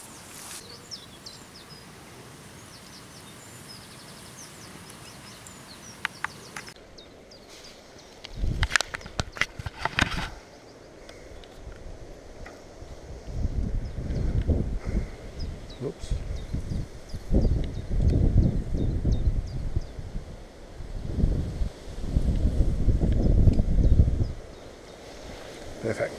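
Outdoor background with faint bird chirps, broken from about a third of the way in by repeated low rumbling bursts of wind and handling noise on the camera microphone, loudest in the second half.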